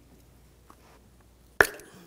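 Quiet, then one sharp pop about one and a half seconds in as the ignition coil, twisted back and forth, comes loose from its spark plug tube.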